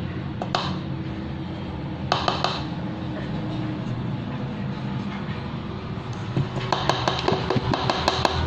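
Silicone spatula scraping cake batter out of a bowl into an aluminium tube pan: two brief scrapes early, then a quick run of light clicks and knocks of the spatula and pan near the end, over a steady low hum.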